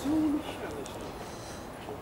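Faint, steady street background noise on a city pavement, opened by a brief hum-like tone that lasts about a third of a second.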